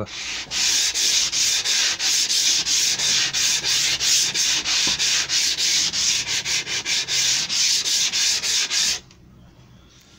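Hand sanding along the edge of an MDF panel with a mesh abrasive sheet: quick back-and-forth scratchy strokes, about four a second, that stop about a second before the end.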